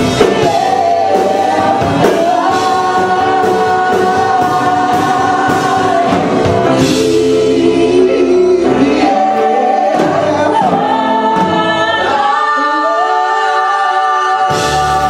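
Ensemble of male and female voices singing in harmony over a live rock band of piano, guitar, bass and drums. About twelve seconds in, the bass drops out and the voices hold long notes.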